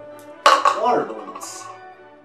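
Background music with a sharp knock about half a second in, as a plastic tub is set down on a wooden table, followed by a short vocal sound rising and falling in pitch.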